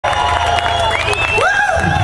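Concert crowd cheering and clapping, with several people whooping and one long high whistle. A steady low hum runs underneath.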